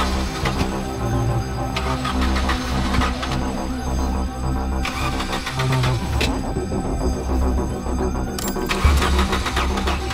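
Tense film score over a car's starter cranking the engine in several attempts, each with a rising whine, without the engine catching: the car won't start.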